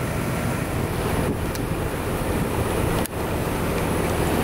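American Standard R-22 outdoor condensing unit running steadily in cooling: compressor hum under the rush of the condenser fan, with a brief dropout about three seconds in.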